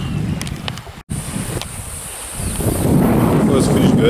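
Wind noise on the microphone, a steady low rush that drops out suddenly for an instant about a second in and then builds into stronger gusts in the second half.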